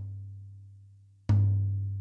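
Rack tom of a Zebra Drums free-floating London plane wood kit, fitted with coated Ambassador heads on both sides, struck twice with a drumstick: a soft hit at the start and a harder one just over a second in. Each hit is a low, pitched tone that rings and slowly fades.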